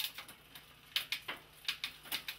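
Bicycle drivetrain turned by hand, the chain and rear derailleur clicking as the chain shifts across the rear cassette cogs: a few sharp clicks at the start, then a quicker run of clicks in the last second.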